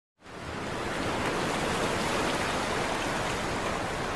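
Steady rushing sea-water sound, fading in over the first half-second and then holding even.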